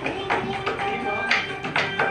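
Hands drumming on a wooden tabletop: a quick, uneven rhythm of slaps and taps, about three or four strikes a second, played as a beat.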